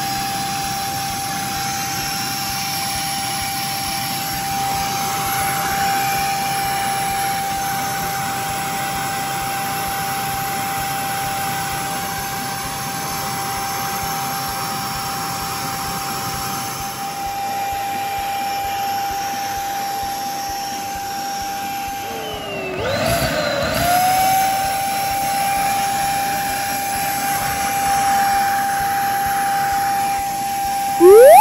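Beldray handheld vacuum cleaner running, its motor giving a steady high whine over the rush of air. About two-thirds of the way through the pitch dips and wavers for a second or two, then settles back to steady.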